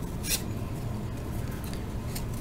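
A single brief papery scrape about a third of a second in, as a cardboard trading card is slid off a stack, over a faint low room hum.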